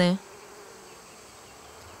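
Bees buzzing faintly and steadily while foraging on a flower.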